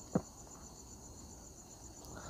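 Steady, high-pitched insect trill that pulses evenly, low in the background. A brief short vocal sound comes just after the start.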